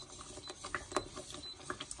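Wire whisk beating a thick cream sauce in an enamelled pot: quick, irregular clicks and taps of the wires against the pot, with wet splashing of the sauce.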